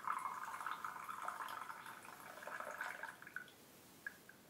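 A thin stream of a brown, milky drink poured from a small pot into a ceramic mug, a steady trickling splash as the mug fills, stopping about three and a half seconds in.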